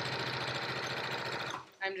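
Domestic electric sewing machine stitching a seam at speed, running steadily, then stopping about one and a half seconds in.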